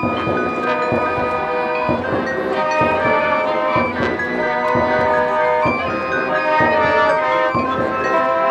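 Marching band playing: sustained wind chords with bell-like mallet percussion ringing over them, and accented strikes about once a second.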